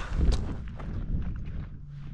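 Wind rumbling on the microphone, loudest in the first half-second, with a couple of faint knocks.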